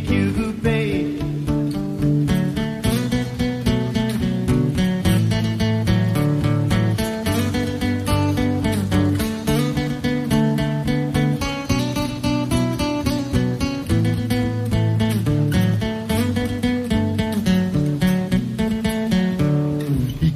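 Acoustic guitar strummed in a steady, busy rhythm of chords, an instrumental passage between the sung lines of a song.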